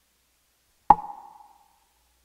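A single sharp knock about a second in, followed by a brief ringing tone that fades within about half a second.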